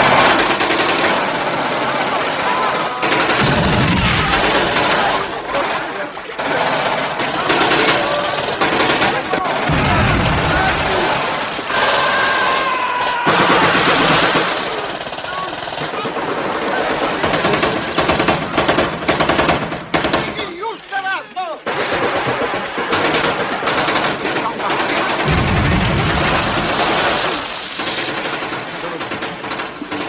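Battle sound effects of sustained machine-gun and rifle fire, rapid shots packed close together throughout, with deep booms three times, about four, ten and twenty-six seconds in.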